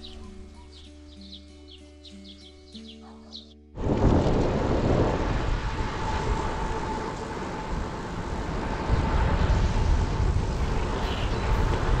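Soft background music of held tones for almost four seconds, then a sudden cut to loud, steady wind rush on the microphone of a camera moving with road bicycles at speed, with road and tyre noise under it.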